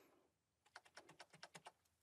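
Faint, quick clicking of computer keyboard keys, about a dozen presses in the space of a second, typical of a key such as Escape being tapped repeatedly to leave a placement command.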